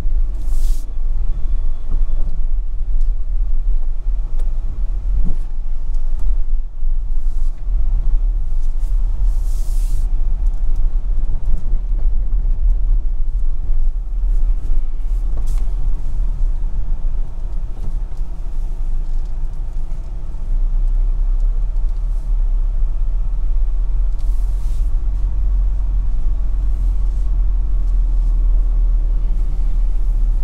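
A car driving along a rough rural road: a steady low rumble of engine and road noise, with brief hissing swells a few times.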